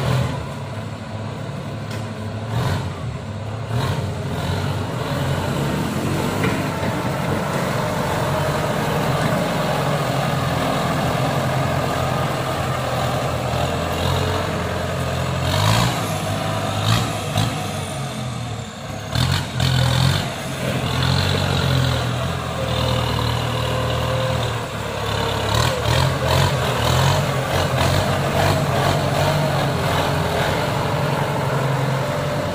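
Kubota M95 tractor's diesel engine running steadily as the tractor works through mud, with a few short clatters around the middle and near the end.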